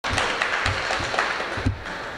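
Applause and clapping from spectators in an ice rink, dense at first and fading out shortly before the end.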